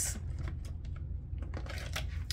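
Scattered light clicks and taps of hands handling small items on a desktop, over a steady low hum.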